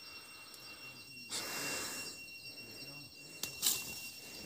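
Faint outdoor ambience with a steady high whine, a rush of noise about a second in and a short louder rustle near the end.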